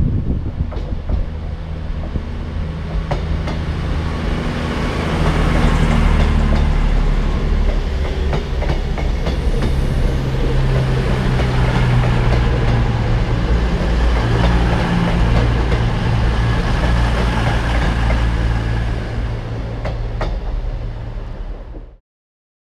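CrossCountry Voyager diesel multiple unit running along the platform. Its underfloor diesel engines give a steady low drone that grows louder about four seconds in as the train draws level, with a few sharp clicks from the wheels.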